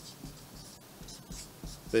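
A pen writing on a sheet of paper, a series of short, soft scratching strokes as a word is written out in large letters.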